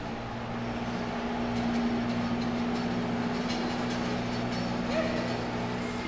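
Steady low machine hum holding a few pitches, over a background of noise.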